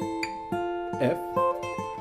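Acoustic guitar fingerpicking triads on the top three strings, moving from A minor to F, the picked notes ringing together under a quick hammer-on and pull-off on the first string.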